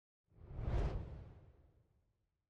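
A single whoosh sound effect for an animated on-screen text transition, with a deep low end. It swells in about a third of a second in, peaks quickly, and fades away over about a second.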